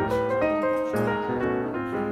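Background piano music, a run of notes and chords at an even pace.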